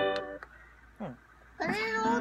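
Held notes on an electronic keyboard stop about half a second in. After a quiet gap, a small child's high-pitched, meow-like vocal call starts near the end.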